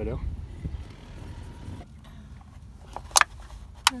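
A low rumble for the first two seconds, then two sharp plastic clicks about three seconds in and just before the end, as a cut-off plastic bottle used as a funnel is handled in an engine's oil filler neck.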